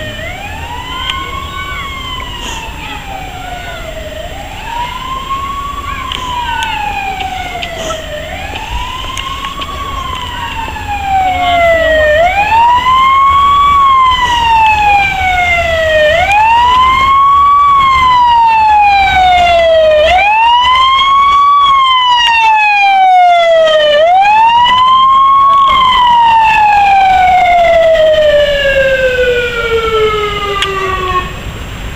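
Wailing siren of a vintage red Cadillac fire-service car, rising quickly and falling slowly about once every four seconds. It becomes much louder about 11 seconds in, and the last wail glides down near the end.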